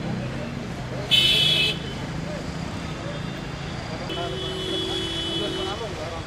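Roadside traffic with vehicle horns: a short, loud horn blast about a second in, then a longer, steady honk from about four seconds in until near the end, over a continuous low traffic and engine rumble.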